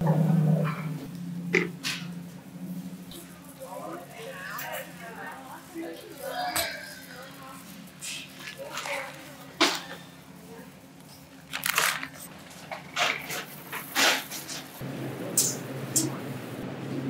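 Supermarket background with faint voices and a steady low hum, broken by several sharp clicks and knocks from a shopping cart and a freezer-case door being handled.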